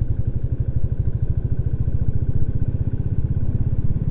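Motorcycle engine running steadily under way, a rapid, even train of exhaust pulses heard from the rider's seat.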